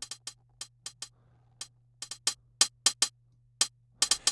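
Hi-hat sample soloed in Reason's Redrum drum machine, playing a pattern of short, crisp ticks with uneven, swung spacing. A faint low hum runs underneath.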